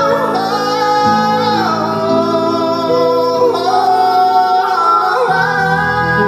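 Live rock-pop band: a lead singer belts long, high sung notes that glide from pitch to pitch, over keyboard and electric guitar.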